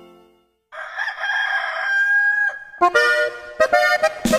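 A rooster crowing once, for about two seconds, between songs. Just before, the last song fades into a brief silence, and the next song's band music starts up near the end.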